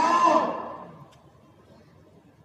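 A man's amplified voice, heard over a loudspeaker, ends a phrase and fades out within the first second. A pause with only faint background noise follows.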